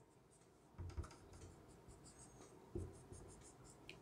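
Faint, short strokes of a marker drawing dashes on a whiteboard, two of them a little louder, about a second in and near three seconds, with near silence between.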